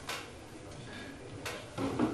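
Three short, sharp clicks or taps, spread over two seconds, over a low steady room background.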